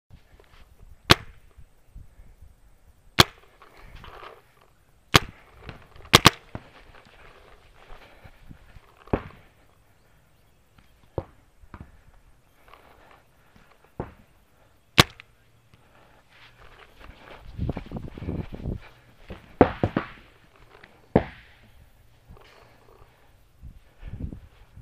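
Paintball marker firing single shots, sharp pops a couple of seconds apart with a quick pair of shots about a quarter of the way in, plus fainter pops in between. A short stretch of rustling noise comes about three-quarters of the way through.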